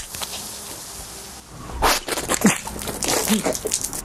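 Freshly opened aluminium energy-drink can fizzing, a steady hiss for about a second and a half, followed by a string of short, irregular sounds.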